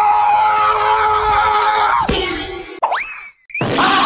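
Cartoon-style sound effects: a long held pitched tone sinking slowly, then a quick downward glide about two seconds in, followed by a fast rising whistle-like glide. The sound cuts out briefly, and a new, noisier sound starts just before the end.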